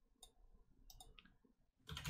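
Near silence broken by a few faint clicks from computer use, about a quarter second in and again around one second in. Keyboard typing picks up right at the end.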